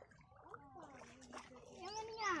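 Faint voice-like calls: a few short sounds that rise and fall in pitch, the strongest near the end.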